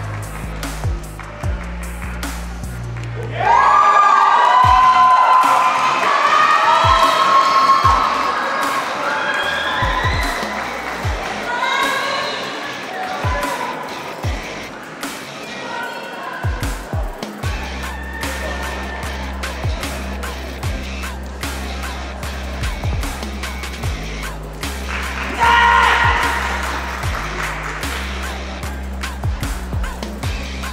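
Music with a heavy bass beat. The bass drops out for a stretch a few seconds in, while loud cheering and shouting voices take over. The music returns with a single loud shout near the end, and sharp knocks are scattered throughout.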